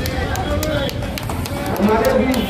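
Indistinct voices of several people talking at once over a low rumble, with scattered sharp clicks.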